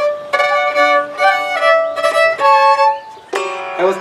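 Violin playing a short phrase of bowed, held notes that step up and down in pitch, a few notes a second, breaking off about three seconds in.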